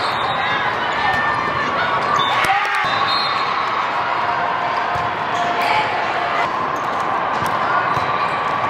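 Volleyballs being struck and bouncing during indoor rallies, sharp slaps over the steady chatter of a crowd in a large, echoing hall. The sound drops out briefly about two and a half seconds in, then carries on.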